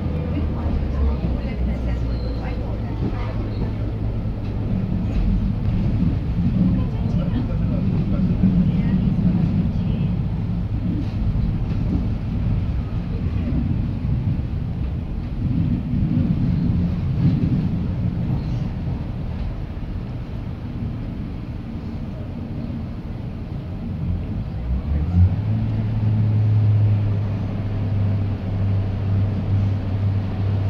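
Class 142 Pacer diesel railbus heard from inside the saloon while running: a steady low drone from the underfloor diesel engine under the rumble of the wheels on the track. About 25 seconds in there is a sharp knock and the engine note steps up into a stronger, deeper hum.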